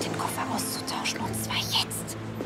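Speech over background music with steady held notes.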